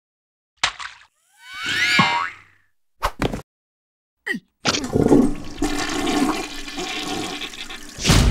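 Cartoon sound effects without words: a short burst, a rising whistle-like glide, two quick clicks, then a long rushing noise filling the last three seconds or so.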